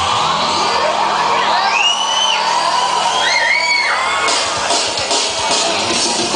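Dance music played loud over a hall's sound system, with the audience whooping and cheering over it; a strong regular beat comes in about four seconds in.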